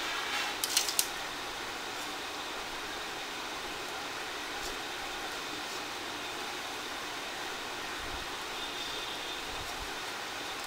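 Steady background hiss with a few sharp clicks about a second in and faint ticks later, from a small screwdriver and plastic parts being handled on the opened handle of an electric mosquito bat.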